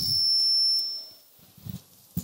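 High, steady whistle from the public-address microphone, ringing over a loud hiss that stops just before it fades out a little over a second in. A soft knock follows near the end.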